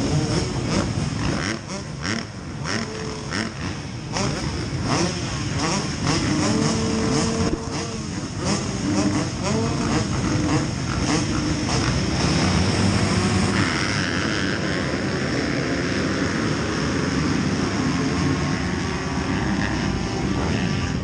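Motocross bike engine running at low revs, picked up by the rider's helmet camera while it rolls slowly along, with people talking close by.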